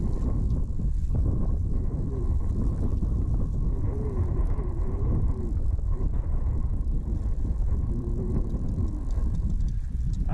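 Steady low rush of wind on the microphone and flowing river water, with no clear pattern or sudden sounds.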